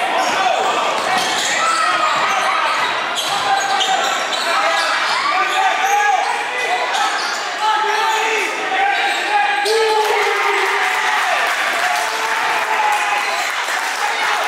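Basketball being dribbled on a hardwood gym floor during live play, with spectators and players talking and shouting in the gym.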